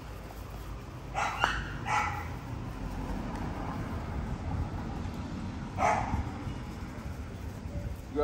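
XL bully puppies barking in short yaps: a few quick barks about a second to two seconds in, and one more near six seconds, over a steady low rumble.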